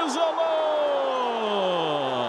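A male sports commentator's long, held goal cry ('gooool'): one unbroken shout that slowly falls in pitch.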